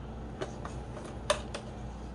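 A few light clicks and taps of small plastic filter-kit parts being handled, the sharpest about a second and a quarter in, over a steady low hum.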